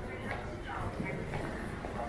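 Indistinct voices of passers-by talking, with footsteps clicking on a hard tiled floor.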